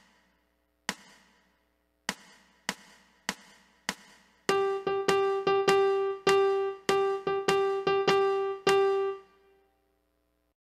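A two-measure count-off of sharp clicks, two slow then four faster, followed by a piano playing one repeated note in a swung long-short eighth-note rhythm for about five seconds, the last note ringing out.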